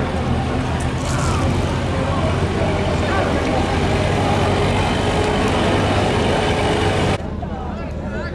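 Steady scraping rumble of a log-loaded sled being dragged over grass by a draft horse, with men's voices. It cuts off sharply about seven seconds in.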